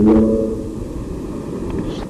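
A man's drawn-out word over a public-address system ends just after the start. A steady low rumble of hall background noise follows.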